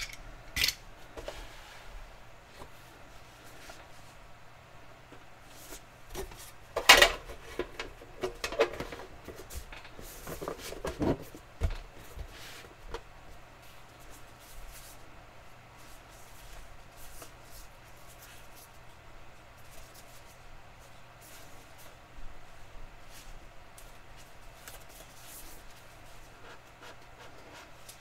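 Cardboard rubbing and sliding as a small card box is worked open by hand. A few sharp taps and knocks come in a cluster about 7 to 12 seconds in, with lighter rustling scattered through the rest.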